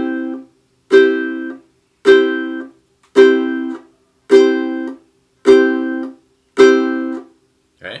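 Ukulele strumming a closed-shape C chord about once a second, seven strums in all. Each chord rings for about half a second and then stops sharply, because the pinky is dropped onto the strings to mute them.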